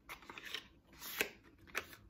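A small cosmetic product package handled close to the microphone: a few short clicks and rustles, the loudest just past a second in.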